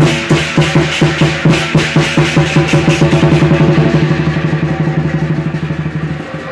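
Lion dance percussion: a large wooden barrel drum beaten with sticks, with crashing hand cymbals and a gong ringing over it. A steady beat quickens into a fast drum roll about halfway through and eases slightly in loudness near the end.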